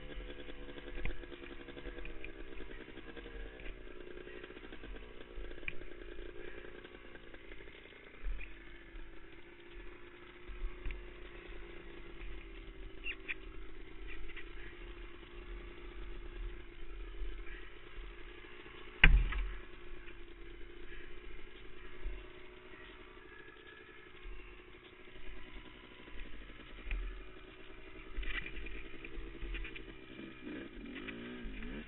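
A quad's engine idling, its pitch drifting slowly up and down, with low thumps and clatter. A single sharp knock about two-thirds of the way through is the loudest sound.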